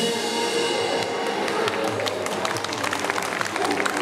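A drum kit and its pop backing track end a song right at the start, the cymbals ringing off, then an audience claps.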